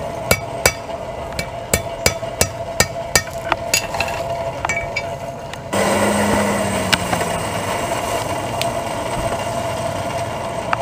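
Blacksmith's hand hammer striking hot iron on an anvil, about three sharp ringing blows a second for nearly six seconds. The blows then stop and a sudden steady rushing noise takes over as the iron goes back into the forge fire.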